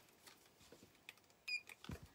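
Faint handling noise from jewelry cards and packaging being moved: light scattered clicks, a short squeak about one and a half seconds in, then a soft thump near the end.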